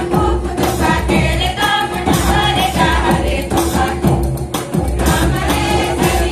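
A chorus of voices singing a folk song together over a steady drum beat.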